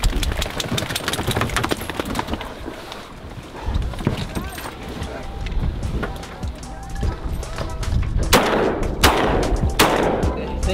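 A wet dog shaking water off its coat at the start, then quieter background music. Near the end come three shotgun shots, about two-thirds of a second apart, fired at a flying duck and missing it.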